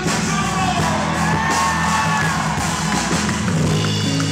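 Live folk-rock band playing: acoustic guitar and drum kit, with a male voice holding one long, slowly bending note in the first half.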